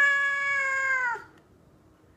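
Mackerel tabby cat giving one long meow that holds level and then drops in pitch as it ends, about a second in.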